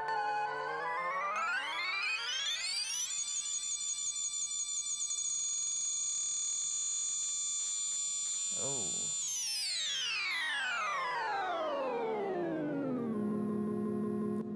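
Teenage Engineering OP-1 synthesizer playing a sample taken from its FM radio, bent by an effect. The pitch glides up for about a second and a half, holds high for about six seconds, then slides steadily back down near the end.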